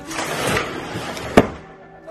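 A door being opened by hand: a rushing scrape of handling and movement for about a second, then a single sharp knock of the door or its latch about one and a half seconds in.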